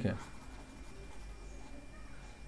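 A man's voice ends a word at the start, then a stylus scrapes faintly on a tablet screen.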